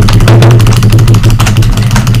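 Very loud, distorted burst of sound: a steady low buzz under a dense, rapid crackle.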